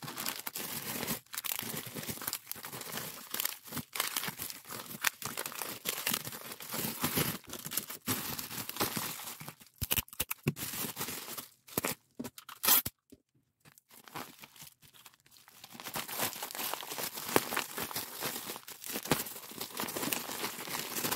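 Bubble wrap and plastic packaging crinkling and crackling as it is handled and folded around small packets, with tape being torn from a handheld dispenser. There is a sharp loud crackle about twelve and a half seconds in, then a pause of about two seconds before the crinkling starts again.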